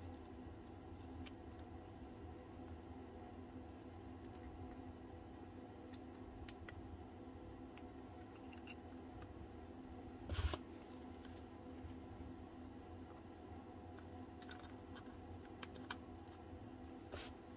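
Faint scattered clicks and light taps of small gears and the plastic gear housing of a cordless drill gearbox being handled and taken apart, with one louder knock about ten seconds in.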